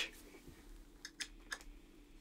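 A few faint clicks over a low, steady hum: the Suhr Alt T Pro's five-way pickup selector being switched back to the bridge position.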